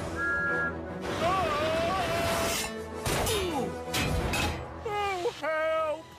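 Cartoon background music with crash and whoosh sound effects and a falling glide a little after three seconds in. A short two-note phone notification tone sounds at the start, and a voice calls out near the end.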